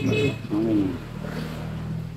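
A bird calling: a low, steady call lasting about a second and a half, after a voice trails off at the start.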